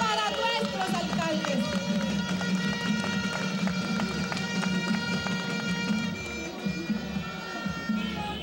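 Music with several sustained wind-instrument tones held together for about six seconds over crowd noise, easing off near the end.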